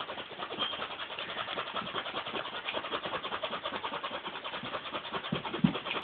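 A zipper being zipped back and forth as fast as possible, a rapid, even run of short scratchy rasps many times a second.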